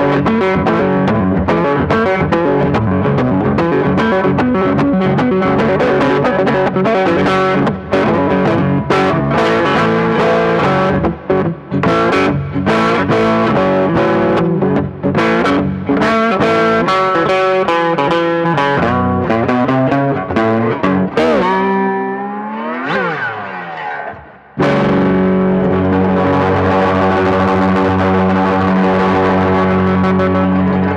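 Four-string license-plate electric guitar (a cigar-box-style build) played solo in a blues riff of quick picked notes. Near the end the pitch dives and climbs back, and then a chord is struck and left ringing.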